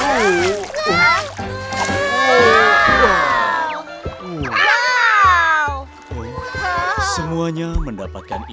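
Cartoon characters' wordless excited shouts and cries, rising and falling in pitch, over background music, with water splashing where a fishing line hits the sea.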